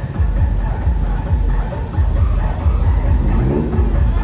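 Loud electronic dance music from a street-party sound system, with a steady heavy bass beat.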